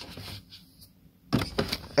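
Handling noise from things being shuffled close to the microphone: after a quiet start, a run of short scuffs and clicks begins a little over a second in.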